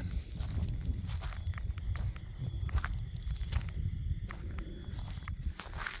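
Footsteps of a person walking over dry dirt and grass, an irregular series of short scuffs and crunches, over a steady low rumble.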